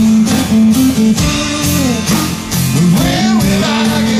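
Live band playing a slow blues-rock song, with guitar, bass and drums; the lead notes bend and slide in pitch over a steady beat.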